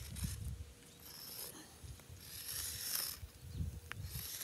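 Sidewalk chalk scraping across pavement in several dry, hissy strokes of half a second to a second each, over a low rumble.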